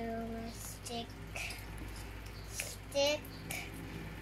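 A young girl humming a steady held note near the start, followed by short hummed or voiced sounds about one and three seconds in, with faint handling noises from small stickers between them.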